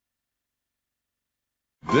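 Dead silence for nearly two seconds, then a man's voice over music starts right at the end.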